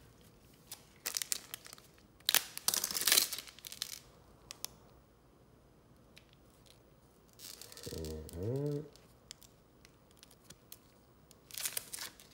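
A trading-card pack wrapper being torn open, in several short ripping and crinkling bursts, the longest about two to four seconds in, with small clicks of cards being handled. A short hum from a man's voice comes about eight seconds in, and another rip comes near the end.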